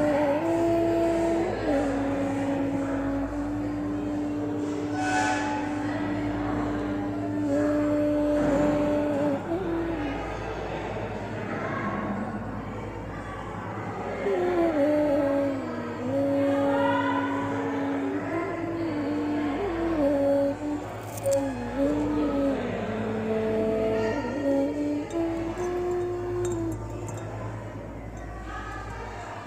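A slow melody of long held notes that slide and step from one pitch to the next, over a steady low hum.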